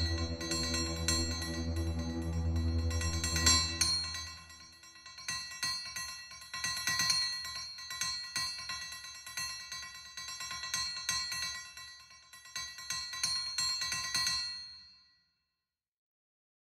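Background music. A deep bass part drops away about four seconds in, leaving lighter high notes over a ticking beat, and the music fades out about a second before the end.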